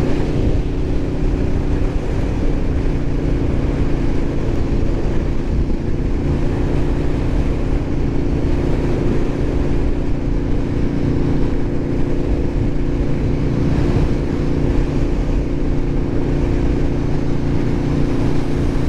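Aprilia RSV4 1100 Factory's V4 engine running at a steady, light cruise in sixth gear at about 55 mph, with wind rushing over the microphone.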